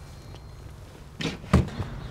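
A single dull thump about one and a half seconds in, after a stretch of quiet background noise.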